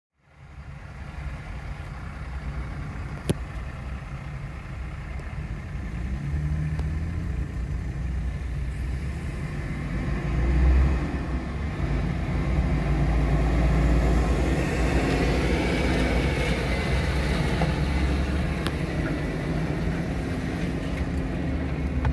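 Car engine and road noise heard from inside a car's cabin while it creeps along in traffic: a steady low rumble that grows louder about halfway through. There is a single sharp click a few seconds in.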